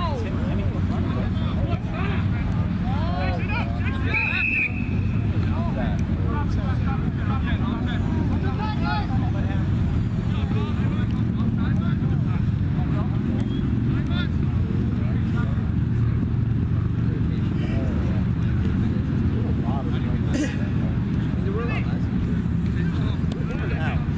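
Faint, distant shouting from rugby players over a steady low rumble, with one short referee's whistle blast about four seconds in.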